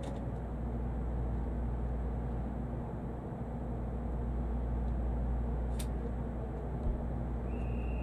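Steady low hum of an N700 Shinkansen train standing at a station platform, with a single sharp click about six seconds in. A steady high electronic tone starts near the end.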